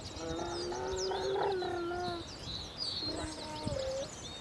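Small songbirds chirping and twittering continuously in quick, high calls. Over them, a loud, drawn-out pitched call starts just after the beginning and holds steady for about two seconds. A shorter call that steps up in pitch follows near the end.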